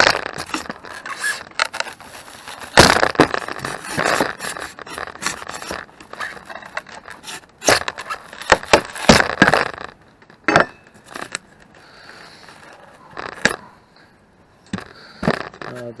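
A steel pry bar levering a glued wooden block off a sheet of foam: metal scraping against wood, and crackling and tearing as the glue joint gives and the foam rips away. The sounds come in busy spells with short pauses, with a few sharp cracks in the quieter second half.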